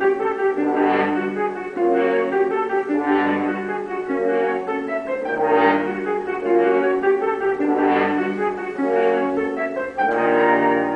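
Orchestral score music led by brass, playing sustained chords that swell about once a second.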